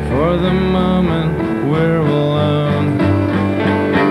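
Live piano-rock band playing a slow song: grand piano, drums and upright bass, with a held vocal line that slides up and down between notes.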